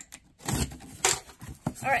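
Box cutter slicing along the packing tape on a cardboard box: a few short, scraping cutting strokes, the loudest about a second in.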